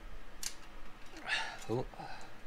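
Light handling noise of loose metal bolts, with one sharp click about half a second in, then a man's brief 'oh' near the end.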